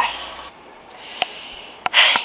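Faint steady hiss with a single sharp click a little past the middle and two quick clicks near the end.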